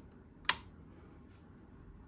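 Power Designs TW5005 bench power supply's front-panel toggle power switch flicked on: one sharp click about half a second in. The unit stays dead.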